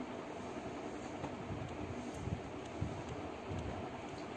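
Folded cotton nighties being handled and shifted by hand, the cloth rustling softly over a steady low background rumble, with a few faint ticks.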